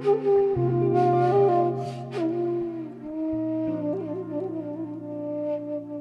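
Bamboo transverse flute playing a slow melody with pitch slides and wavering ornaments, with breaths audible between phrases, over sustained low accompanying notes.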